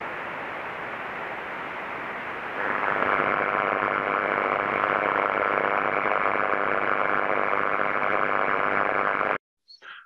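Playback of an ultrasonic partial-discharge detector recording from medium-voltage switchgear: the discharge arcing and tracking made audible as a steady noisy hiss. It grows louder about two and a half seconds in and cuts off suddenly near the end.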